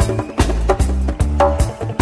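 Live roots reggae band playing, with a deep bass line under steady drum and percussion hits.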